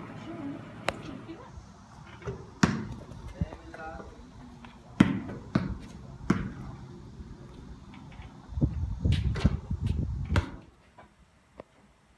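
Basketball bouncing on a concrete court: scattered single thuds at irregular spacing, with voices talking in between.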